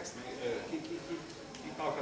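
A man speaking Hungarian in a lecture, with a short pause in the middle.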